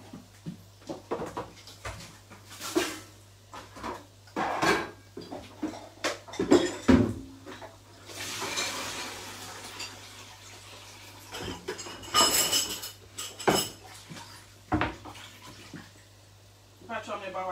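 Kitchen utensils knocking and clinking against metal pots and pans, a dozen or so separate strikes, with a stretch of rushing noise about eight seconds in and a ringing metal clink a little after.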